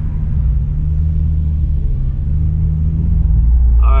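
Toyota GR Supra (MK5) engine and road rumble heard from inside the cabin while driving: a steady low drone that gets a little louder about three seconds in.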